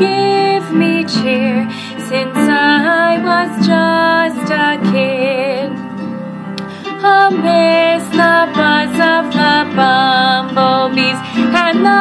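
A woman singing a slow, smoothly joined melody with vibrato over instrumental accompaniment. Her voice drops out briefly about six seconds in, then comes back.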